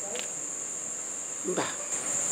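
Crickets chirping at night: a continuous high-pitched trill, with one short spoken word near the end.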